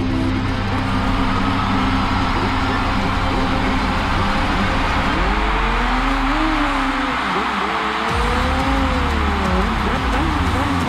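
A motorcycle engine revving, its pitch rising and falling again and again in the second half, over background music.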